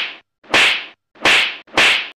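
A quick series of sharp, hissing strikes, each sudden then fading within a third of a second, about one and a half a second with dead silence between them: an edited-in percussive sound effect rather than the race audio.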